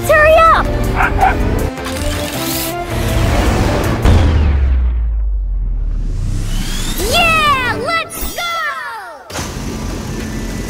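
Cartoon soundtrack: background music with a dog's excited barks and yips near the start and again about seven seconds in. In between comes a long whooshing sweep over a low rumble.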